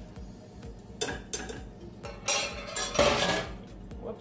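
Metal fork clinking and scraping against a small saucepan as a lime is juiced over it: several short clatters, the loudest about three seconds in.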